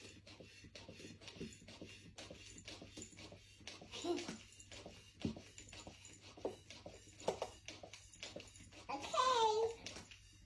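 Small hand ball pump with a needle inflating a toy basketball: soft, quick, uneven strokes, about three a second. The ball is not yet fully inflated.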